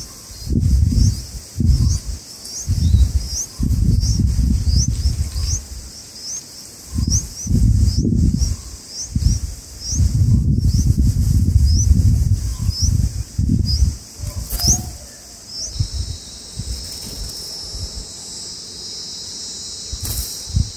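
A bird's thin, high chirps, each rising briefly in pitch, repeated about every half second over bursts of low rumbling. The chirping stops about three-quarters of the way through, and a steady high insect buzz carries on.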